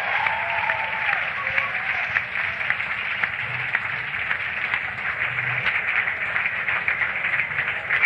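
Live rock club audience applauding between songs, with dense clapping and a few shouts in the first second or so.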